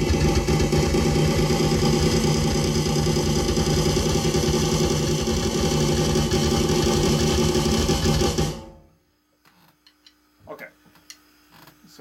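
Very fast continuous roll on an electronic drum kit, hands and both feet going at once, a dense unbroken stream of strokes that stops abruptly about nine seconds in. A few faint clicks follow.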